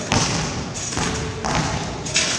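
Trampoline bed and springs thudding under landing bounces, twice: just after the start and about a second in, each with a rustling, ringing tail from the springs.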